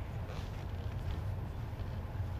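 Background noise of a billiards hall during a pause between shots: a steady low hum with a faint, even hiss, and no ball strikes.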